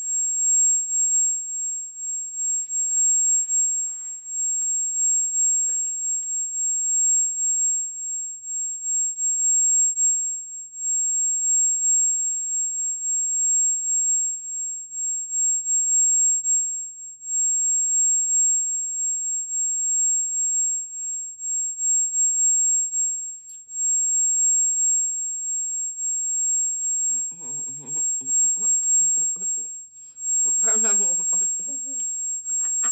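A steady high-pitched electronic whine, with faint voice sounds in the last few seconds.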